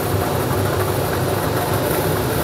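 Lottery ball draw machine running with its mixing chambers going, a steady mechanical rumble.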